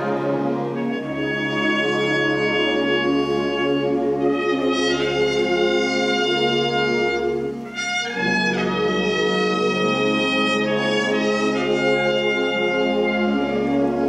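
School wind band playing a slow passage of held chords, the notes changing step by step. There is a brief break just before the middle, then the phrase resumes.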